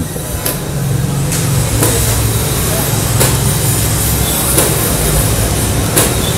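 JCB backhoe loader's diesel engine running steadily, a low even hum, with a few faint knocks.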